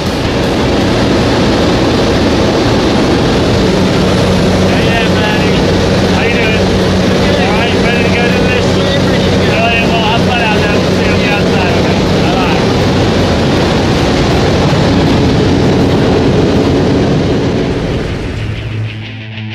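Steady drone of a small jump plane's engine and propeller with rushing air, heard inside the cabin. Raised voices come through the noise from about four to twelve seconds in.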